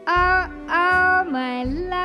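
A woman singing a slow ballad live into a microphone, with long held notes: two loud sustained notes in the first second or so, then a dip to a lower note and back up. Behind her is a quiet instrumental accompaniment with low bass notes.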